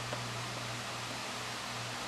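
Steady hiss with a low, even hum: room tone, with one faint click just after the start.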